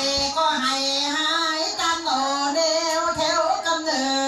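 Pleng Korat (Korat folk song) singing: one voice holding long, drawn-out notes that slide and waver in pitch.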